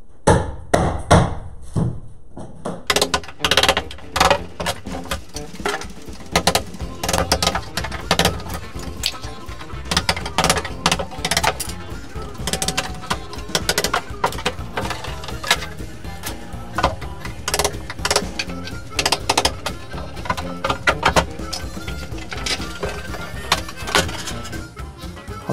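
Sharp knocks of a tool striking wooden strips on a wall panel to knock them loose. From about three seconds in, background music plays over the continued knocking.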